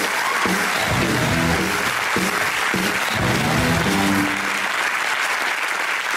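Television studio audience applauding a guest's entrance over the game show's music. The music stops about four and a half seconds in, and the clapping carries on.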